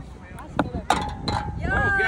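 Putter striking a golf ball on a carpeted mini golf green: a few sharp clicks, then voices exclaiming near the end.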